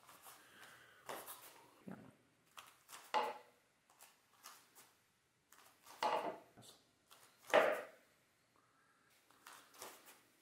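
Several short swishes and knocks from a sword and a steel buckler being moved through guard positions, with two louder ones at about six and seven and a half seconds.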